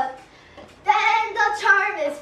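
Children's voices chanting in a sing-song. The chant breaks off just after the start and comes back in a little before one second.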